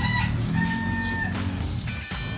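A rooster crowing once: a single held, flat call lasting about a second, starting about half a second in, over steady background music.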